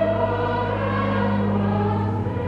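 A choir of child cathedral choristers singing held notes of a sacred choral piece, with a steady low note sustained underneath.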